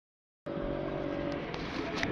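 Brief silence at an edit cut, then road traffic on the bridge: a passing motor vehicle's steady engine drone over road noise, its held tone fading out about halfway through.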